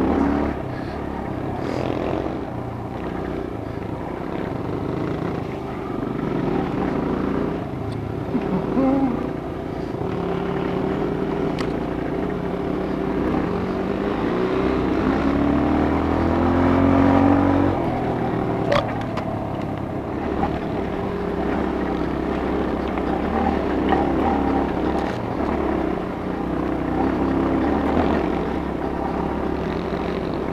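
Dirt bike engine running under way, revving up and down with the throttle; its pitch rises and falls most plainly about halfway through, where it is loudest. A single sharp knock comes a little after.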